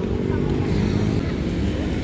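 Steady engine noise from motor scooters and street traffic, with voices in the background.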